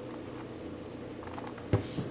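Faint plastic clicks of a six-layer Royal Pyraminx puzzle being turned by hand, with one sharper click near the end.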